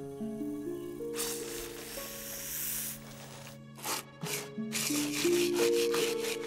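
Cartoon background music of held notes entering one after another and building into a chord. A scratchy, hissing scrape runs underneath it, followed near the end by a series of short rasping strokes.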